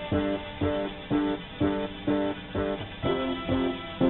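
Guitar playing chords in a steady rhythm, about two strokes a second, with no voice.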